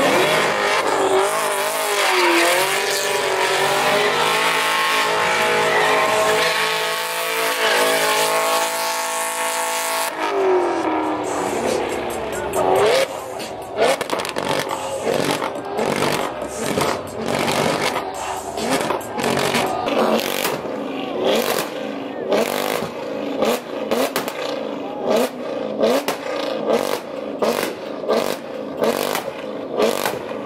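Car engine revving hard with tyres squealing as it spins donuts in a burnout, the pitch held high for several seconds and then dropping. It is followed by a run of sharp throttle revs, about one or two a second, in the second half.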